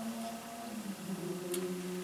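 A pause in a spoken reading: quiet room tone with a faint steady hum, and one faint click about one and a half seconds in.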